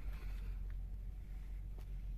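Faint low background rumble with two small clicks, the sort made by handling, and no distinct event.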